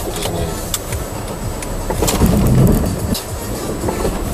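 Car engine running and tyres rolling on a packed-snow road, heard from inside the car's cabin. There are a few light clicks, and the low rumble swells louder about two seconds in.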